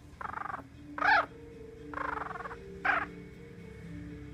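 Young Yorkshire terrier puppy squeaking and grunting in four short calls: two rough, buzzy grunts alternating with two brief high squeals that rise and fall.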